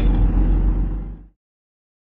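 Mercedes Vario 818 expedition truck's diesel engine and running gear rumbling steadily as it drives down a rough dirt track, heard from the cab. The sound fades and cuts off to complete silence about a second and a quarter in.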